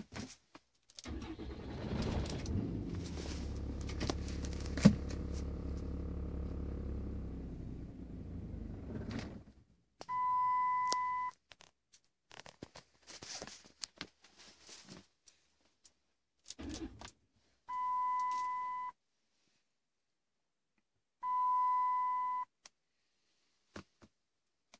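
Dodge Ram's 6.7 L Cummins diesel runs for about eight seconds, then dies suddenly: the stall the owner ties to a drop in fuel rail pressure. A sharp click comes midway through the running, and after the engine stops, the dashboard warning chime sounds three times, each a single steady tone about a second long.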